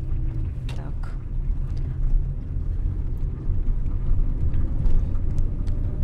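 Steady low road and engine rumble inside a car cabin while driving along a village street.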